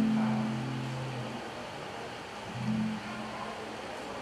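Acoustic guitar played softly: low notes ring and fade away over the first second and a half, then a few more notes sound briefly near the three-second mark.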